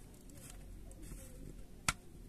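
Fingernails working along the edge of a smartphone's plastic back cover as it is pried off: faint scraping and handling noise, with one sharp click near the end.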